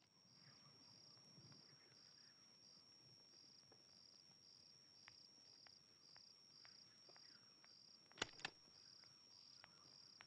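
Faint night chorus of crickets: one steady high trill, with a second cricket chirping in short pulses at a bit under two a second. Two sharp clicks close together late on are the loudest sounds.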